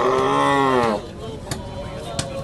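A cow bellowing as it is held down on the ground for slaughter: one long, loud call that ends about a second in. A sharp click follows shortly after.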